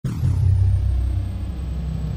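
Deep bass rumble of a logo-intro sound effect, starting suddenly, with a high sweep falling in pitch over the first half second.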